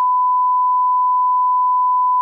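A steady 1 kHz reference test tone, the line-up tone that goes with colour bars, held unbroken at one pure pitch.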